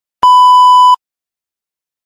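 A single loud, steady electronic beep lasting about three-quarters of a second, starting and stopping sharply: the cue tone telling the interpreting candidate to begin their answer.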